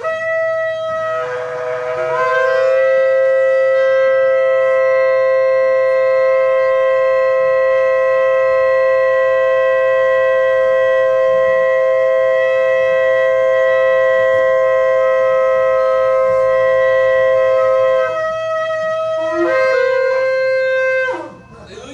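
Shofar blown in one long, steady blast of about fifteen seconds after a wavering start. It breaks off near the end, and a new blast begins, rising in pitch.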